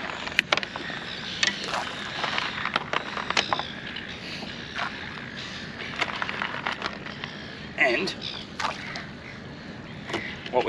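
Handfuls of burley pellets being scooped from a plastic tub and tossed into the water: an irregular scatter of short clicks and taps as the pellets rattle in the tub and drop in.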